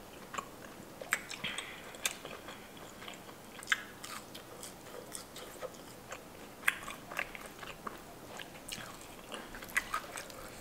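A person chewing shrimp, with sharp wet mouth clicks and smacks coming irregularly every fraction of a second to a second.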